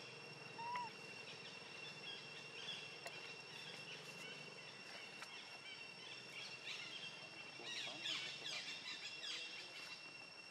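Faint outdoor ambience: a steady high insect drone with scattered bird chirps, which thicken into a flurry about eight seconds in.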